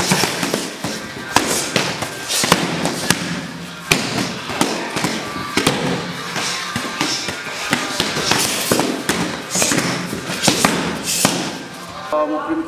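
Gloved punches and kicks slapping against hand-held Muay Thai pads and a belly pad in sharp, irregular strikes, several close together at times, with more pad strikes from other pairs in the background.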